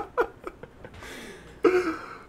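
Men laughing: a few short laugh pulses, then a breathy trailing-off and one brief voiced sound near the end.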